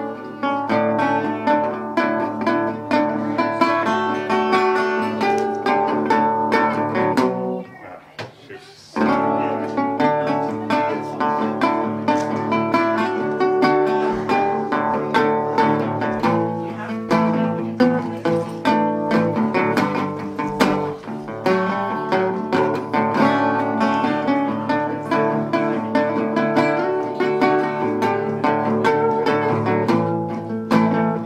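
Metal-bodied resonator guitar fingerpicked in a freshly retuned tuning, a steady run of plucked notes that pauses briefly about seven and a half seconds in and then carries on.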